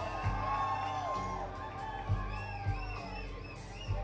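Live rock band playing an instrumental passage: electric guitars with bent, sliding notes over sustained bass and drum hits.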